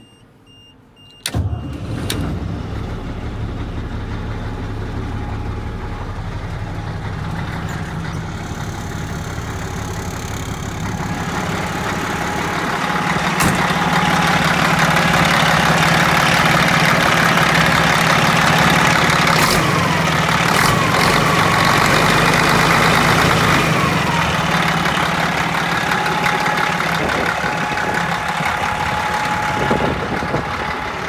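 Caterpillar 1674 diesel truck engine, already warm, firing up about a second in and settling into a steady idle. It gets louder from about twelve seconds on as it is heard close up.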